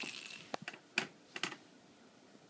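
A plastic bottle cap clattering on a wooden floor: a handful of light clicks and taps over about a second and a half, the first with a brief ring.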